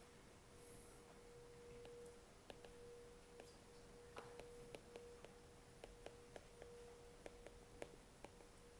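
Near silence: a faint steady hum, broken briefly early on, with faint light ticks of a stylus tapping on an iPad screen during handwriting.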